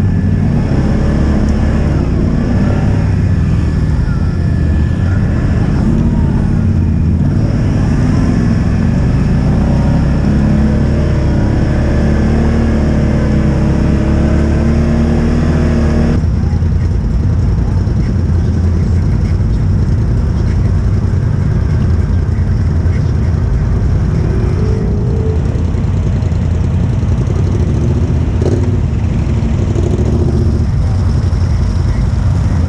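ATV engines running close by, the nearest one's pitch wavering up and down with the throttle. About halfway through the sound changes abruptly to a steadier, lower engine rumble.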